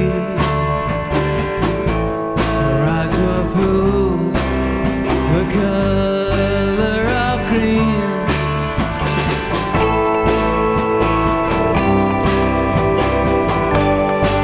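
Psychedelic rock song playing, with guitar and a steady drum beat.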